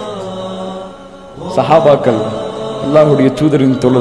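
A man's voice through a microphone, drawing out one long held syllable, falling quieter for a moment about a second in, then going on in a chanting, recitative delivery.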